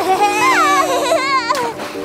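High-pitched cartoon baby voice making wavering, cry-like squeals and whimpers, over a sustained music chord. A short click comes about a second and a half in.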